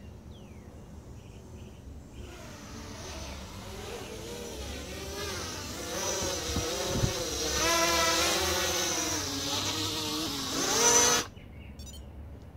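Blade 200 QX quadcopter's propellers and brushless motors buzzing as it flies in close overhead, growing louder and wavering in pitch with the throttle, then cutting off suddenly near the end.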